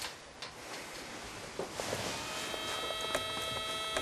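Quiet rustling and a few light knocks as a person settles onto a bed. About halfway through, a sustained chord of background music fades in and holds.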